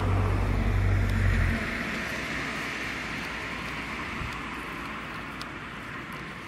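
A car driving past on the street: a loud low rumble for the first second and a half, then tyre noise on the road fading slowly as it moves away.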